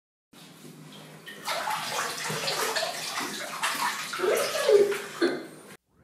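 Water sound effect: splashing and sloshing water with a few droplet plops. It starts faint, grows louder after about a second and a half, and cuts off abruptly near the end.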